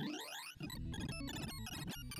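Synthesized beeps from a sorting-algorithm visualizer, each tone pitched by the array value being accessed, as a binary search tree sort works through 256 numbers. It opens with several parallel rising sweeps, then breaks into a rapid jumble of short beeps at shifting pitches about half a second in.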